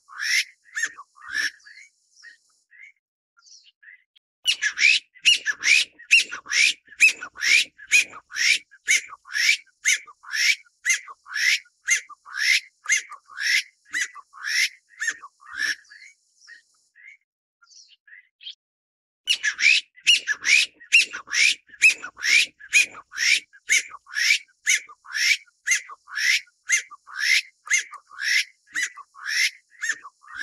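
Taiwan bamboo partridge calling: a loud, rapid series of rising, ringing notes, about three a second. The series comes in two long bouts with a pause of about three seconds between them, the first starting about four seconds in.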